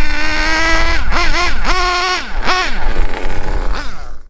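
Hobao Mach nitro engine in a Hyper SS truggy running at high revs, held steady for about a second, then dropping and rising again in quick throttle blips, with the pitch swinging up and down. The sound fades out near the end.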